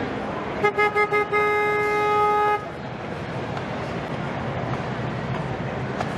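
A horn sounds four quick short blasts, then one long steady blast of about a second, all at the same pitch.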